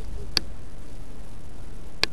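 Wind rumbling on the camcorder microphone, with two sharp handling clicks, one about a third of a second in and one at the end, and a faint short call at the very start.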